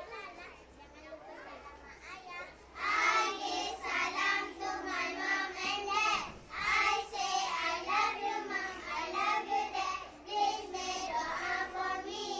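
A group of young children speaking in chorus, many voices together in unison. It is faint for the first few seconds, then loud from about three seconds in, in short phrases.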